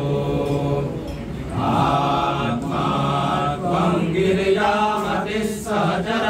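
Male voices chanting a Sanskrit hymn to Shiva in phrases, with brief breaths between them.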